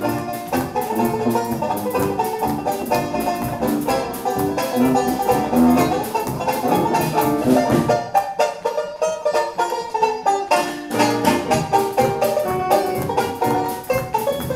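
A live Dixieland-style jazz band playing: sousaphone bass, clarinet, saxophone, trumpet, banjo and drum kit together. About eight seconds in the bass drops out for a couple of seconds, leaving a lighter break, before the full band comes back in.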